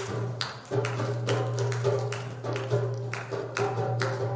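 Live folk-style music: sharp, irregular hand-percussion strikes over a steady low drone.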